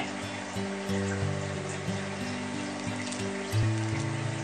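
Background music of held notes that change about every half second.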